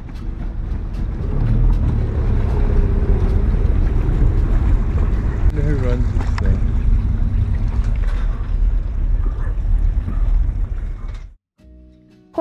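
Inflatable dinghy under way on a river: heavy wind rumble on the microphone with rushing water and the outboard motor running. A brief voice comes about halfway through, and the sound cuts off suddenly near the end.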